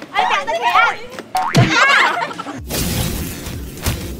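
Excited, high-pitched voices calling out for the first two seconds or so. Then, about two and a half seconds in, a sudden loud noisy sound effect with a heavy low rumble cuts in and runs to the end, like a crash or transition effect.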